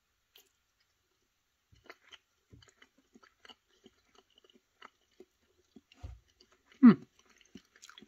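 Soft fruit jelly slab being handled, pulled apart and bitten, heard as faint scattered sticky clicks, then a soft bite and chewing near the end, followed by a short 'hmm'.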